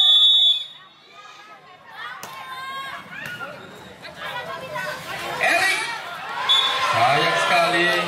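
Referee's whistle blown once at the start for the serve, then spectators' voices shouting and talking through the rally, with a second short whistle about six and a half seconds in.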